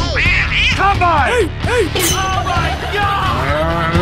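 Background music with a run of short, voice-like calls over it, each arching up and falling back in pitch, several a second.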